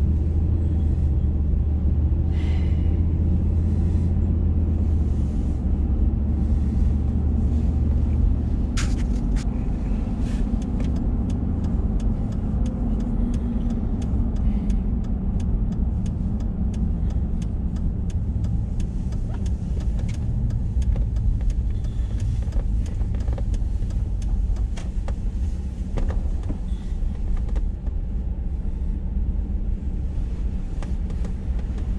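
Road noise inside a moving vehicle: a steady low rumble of engine and tyres, with a deeper hum for the first several seconds that then eases. Through the middle comes a run of light, sharp clicks and ticks.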